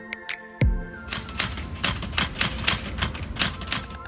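Typewriter keys striking in a quick run of about a dozen keystrokes, starting about a second in, over background music.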